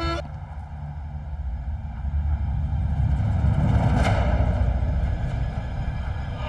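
Low, steady rumbling drone with no melody, swelling into a brief whoosh about four seconds in.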